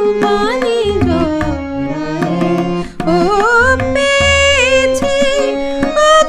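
A woman singing a Bengali song in a sliding, ornamented melody, accompanied by tabla, with a brief break between phrases about halfway through.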